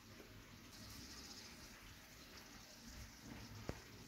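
Near silence: faint room tone, with one faint click near the end.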